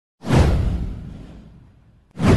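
Cinematic whoosh sound effect with a deep rumble underneath. It swells in sharply just after the start, then fades away over about a second and a half.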